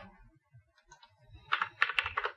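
Computer keyboard typing: a few faint taps, then a quick run of several keystrokes about one and a half seconds in, as a number is typed into a field.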